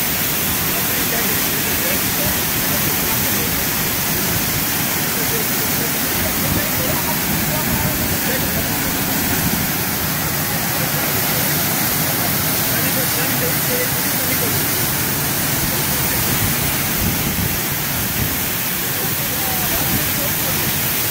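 Glen Ellis Falls, a waterfall pouring down a rock cleft into a plunge pool: a steady, unbroken rush of falling water.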